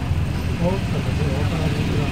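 Low, steady vehicle engine rumble of slow street traffic, with people talking over it.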